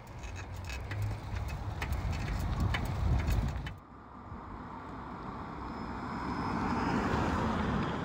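Bicycle ridden over snowy ground: a low rumble with scattered rattling clicks. After a cut about four seconds in, a car approaches, its noise slowly growing louder.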